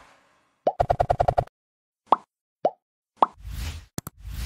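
Animated subscribe-button sound effects: a quick run of about eight short pops, then three single pops about half a second apart, and a whoosh near the end.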